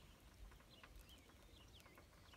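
Near silence: room tone with a few faint, short high chirps.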